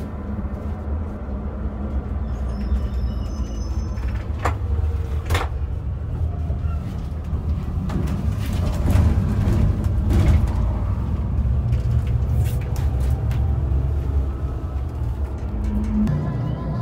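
Steady low rumble of a coach bus on the road, heard from inside the cabin. Two sharp clicks come about four and five seconds in, and fittings rattle and knock through the second half.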